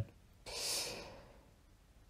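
A man's single breath into the microphone, a soft airy sound lasting under a second, about half a second in.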